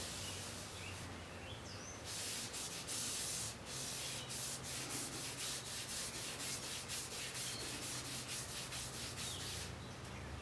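The steel back of a drawknife rubbed back and forth on a wet 1200-grit waterstone in quick, even strokes, about three or four a second. The strokes begin about two seconds in and stop just before the end. This is the lapping of the blade's back to remove the scratches left by the 800-grit stone.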